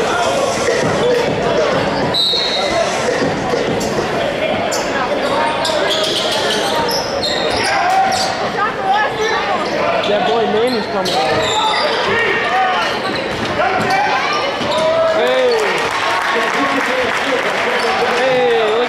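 A basketball bouncing on a hardwood gym court as it is dribbled during play, mixed with shouting voices from players and spectators, echoing in a large gymnasium.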